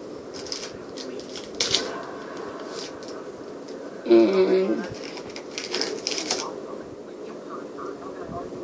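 Rustling, crinkling and light clicks of small medical supplies, gauze and wrappers being handled and picked up from a bedside tray. Just after four seconds in, a short voice-like sound, like a brief hum or murmur, is the loudest thing heard.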